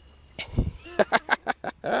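A man laughing in a quick run of short bursts, with a dull low thump just before it.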